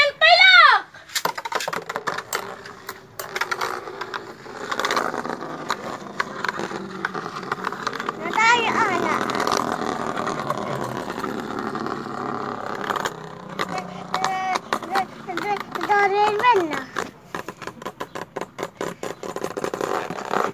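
Two Beyblade spinning tops whirring and clacking against each other and the sides of a plastic basin, with a rapid run of sharp clicks. A child's voice breaks in briefly near the middle and again a few seconds before the end.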